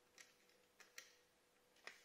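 Near silence with a few faint metallic clicks, about four in two seconds, from an Allen key being turned on an M4 screw to set a rivet nut.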